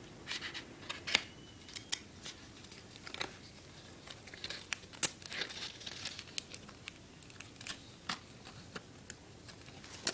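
Cardboard and plastic packaging being handled and opened by hand: irregular crinkles, rustles and small clicks.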